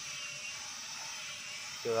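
Small electric motor drive of a scale RC excavator whirring steadily as it moves the boom during a test run.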